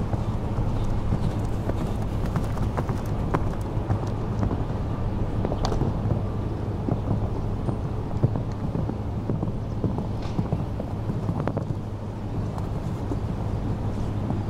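Hoofbeats of a horse cantering on a sand arena, with scattered sharp knocks over a steady low rumble.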